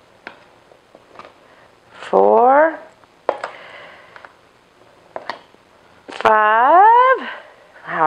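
A woman's voice in two drawn-out, wordless sung or hummed notes, each sliding up and back down, about two seconds in and again near the end. Between them come a few light clicks of a measuring cup scooping flour from a plastic bin.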